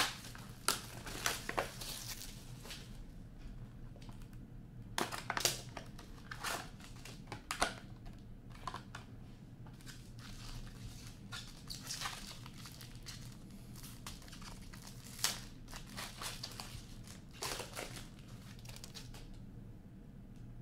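Hand-opening a sealed box of hockey cards: the plastic wrapping and card packaging crinkle and tear in irregular crackling bursts, with a few louder rips among them.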